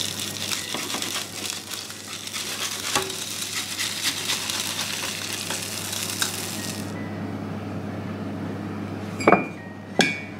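Gyoza frying in oil in a frying pan, sizzling and crackling as the last of the steaming water cooks off, over a steady low hum. The sizzle drops away about seven seconds in, and a sharp clink comes near the end.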